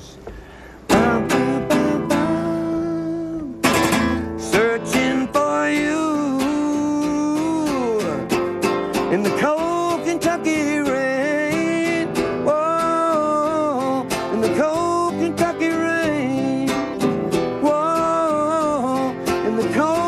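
Man singing a slow country ballad in long held notes, accompanied by his own strummed acoustic guitar; after a brief pause the guitar strums come back in about a second in.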